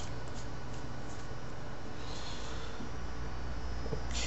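Steady background hiss with a low electrical hum: room tone through a webcam microphone, with no distinct sound event.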